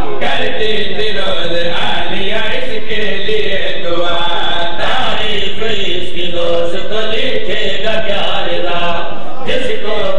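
Men chanting a melodic religious recitation into a microphone, loudly amplified, the voices holding long wavering notes without a break.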